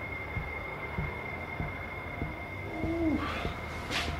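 Quiet room tone with a faint steady high whine and a few small clicks. About three seconds in comes one short, low hoot-like sound that rises and then falls.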